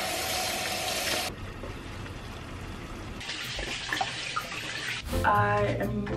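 Steady hissing kitchen noise while chicken cooks in a pan, louder for the first second or so, softer, then louder again. Music with a voice comes in about five seconds in.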